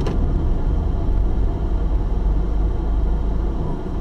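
Steady low rumble of a car driving, engine and road noise heard from inside the cabin, with a short click right at the start.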